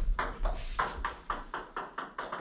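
Table tennis balls hitting paddles and the Joola table top in quick succession, a rapid string of sharp clicks at roughly six or seven a second.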